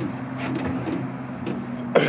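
A steady, low, engine-like hum with a few faint clicks.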